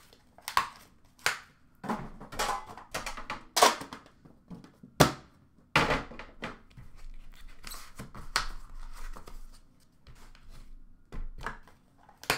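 Trading-card boxes, packs and metal card tins being handled on a glass counter: a string of sharp knocks and taps, with rustling and tearing of card packaging between them.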